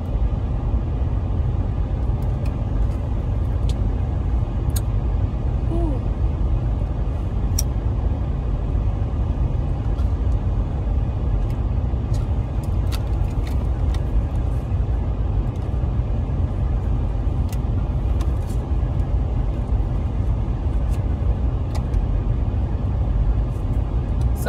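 Steady low rumble of a car idling, heard from inside the closed cabin, with scattered light clicks over it.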